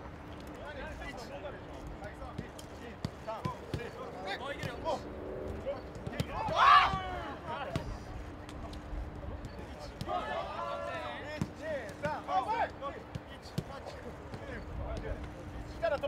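A football being kicked back and forth on a grass pitch, heard as a run of short, sharp thuds, with players calling out among them; one loud shout about six and a half seconds in.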